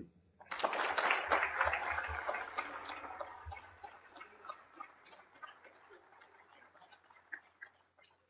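Audience applauding at the end of a speech: it starts about half a second in, is loudest for the first two seconds, then thins out to scattered claps by the end.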